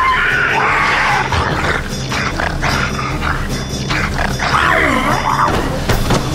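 Roaring and snarling of a large dog-like monster, a film creature sound effect, over a loud film score. The calls glide up and down in pitch in the second half.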